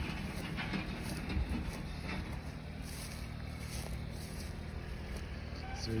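Steady low engine rumble from machinery cleaning a driveway.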